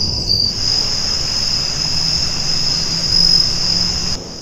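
Evening insect chorus of crickets, a steady high-pitched trill that never breaks, over a low rumble.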